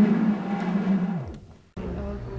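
Videotape audio played through an editing VCR as it shuttles the tape: a steady humming tone that slides down in pitch and dies away a little past a second in, as the tape slows. A brief silence follows.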